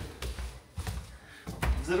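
Footsteps climbing a staircase: a series of short thuds and taps from feet on the treads.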